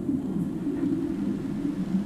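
Soundtrack of an animated film playing on a television and picked up across the room: a low, steady rumble with no dialogue.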